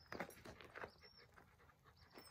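Faint panting of a dog walking on a leash, with a few footsteps on a gravel path.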